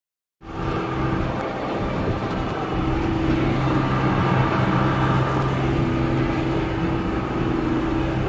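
Tractor engine running steadily under way, heard from inside the cab as a constant low drone with a steady hum. It starts about half a second in.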